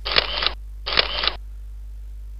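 Presentation-software animation sound effect like a camera shutter, played twice: two short noisy bursts, one at the start and one about a second in, as text appears on the slide.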